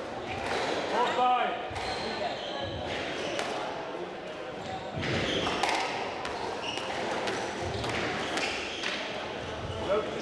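Squash rally: the ball cracking off rackets and the court walls in a run of sharp hits, with shoes squeaking on the wooden court floor in a large, echoing hall.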